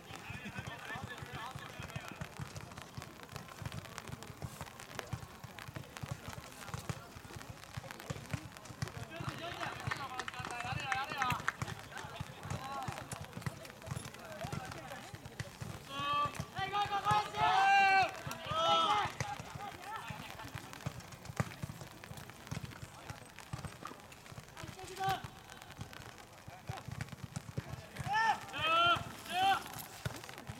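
Distant voices of players shouting and calling across an open soccer pitch, in loud bursts of shouting about ten and seventeen seconds in. Beneath them is steady outdoor background noise with frequent faint low knocks.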